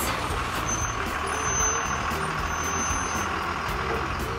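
Bus engine sound effect running steadily as a school bus pulls up.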